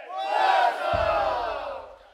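A sikuris troupe closes its piece with a loud collective shout that falls in pitch, and a single deep bombo drum stroke about a second in that rings briefly. The sound then cuts away to near silence at the end of the piece.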